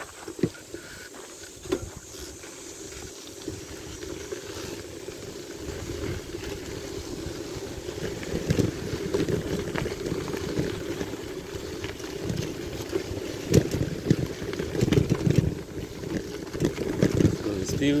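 Wind buffeting the microphone of a handlebar-mounted camera on a moving bicycle, with rumble and short knocks from the bike rolling over a rough path. It grows louder after the first few seconds.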